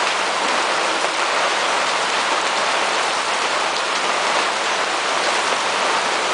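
Heavy rain pouring steadily, heard from under a sailboat's canvas bimini.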